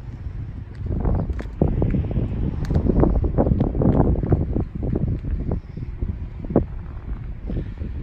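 Wind buffeting the microphone in irregular gusts, a low rumbling rush.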